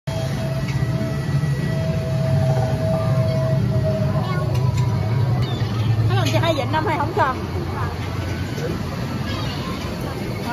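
Steady low rumble of a river-raft water ride's machinery and water around the boat, with brief raised voices about six seconds in.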